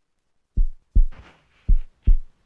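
Heartbeat sound effect: deep low thumps in lub-dub pairs, the first pair starting about half a second in and a second pair near the end.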